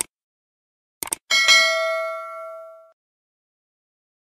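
Subscribe-button animation sound effect: a mouse click, then two quick clicks about a second in, followed by a bright notification-bell ding that rings out and fades over about a second and a half.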